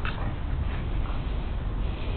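Siberian huskies at rough play, giving short high-pitched yips: one near the start, one about three-quarters of a second in and one near the end. A steady low rumble runs underneath.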